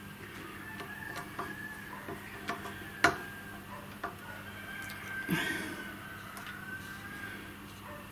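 Faint, sparse clicks of metal hand tools, a screwdriver turning a terminal screw while pliers hold an earth ring terminal in a CNC spindle's wiring box, with one sharper click about three seconds in over a faint steady hum.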